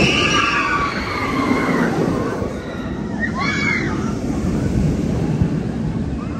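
Steel roller coaster train running along its track with a steady low rumble, riders' voices shrieking over it near the start and again about three and a half seconds in.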